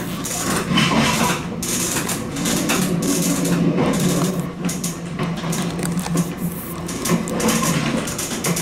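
Train wheels clattering over a run of points and crossings, an irregular series of sharp clicks and knocks over a steady low hum, heard from inside the driver's cab.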